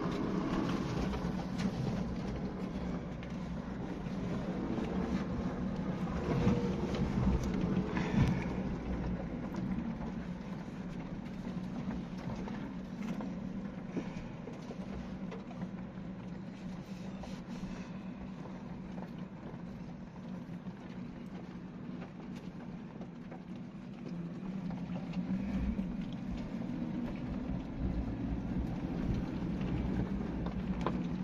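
A Suzuki Jimny heard from inside the cabin, crawling over a rough forest track: its engine drones steadily under tyre and track noise, with scattered knocks and rattles from the bumpy ground. The sound swells twice, about six seconds in and again near the end.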